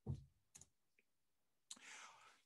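Near silence, broken by a few faint, short clicks and a brief breathy hiss near the end.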